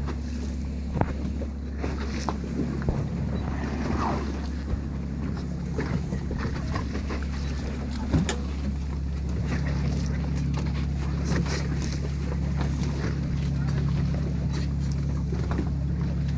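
A boat's engine hums steadily and gets a little louder about nine seconds in, with scattered knocks over the top.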